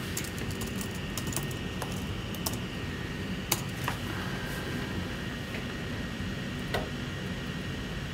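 Scattered keystrokes and clicks on a laptop keyboard, typing a web search, over a steady low room hum.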